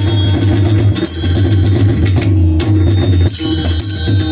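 Warkari kirtan accompaniment: a mridang, a double-headed barrel drum, played by hand in a fast rhythm with deep bass strokes, over a steady held note and the high ringing of small hand cymbals. There is no singing in this instrumental stretch.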